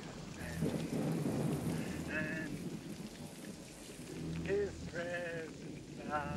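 Rain falling steadily, with a man's quavering voice singing drawn-out hymn notes about two seconds in and again near the end.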